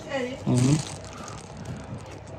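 A man's voice saying a short phrase, then quiet room tone with a few faint ticks.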